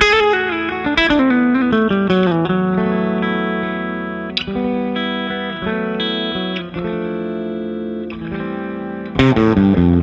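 Red semi-hollow-body electric guitar played through a tube amplifier, a blues lead: a descending run of notes, then held notes and chords with a sharp strum partway through, and a quick flurry of picked notes near the end.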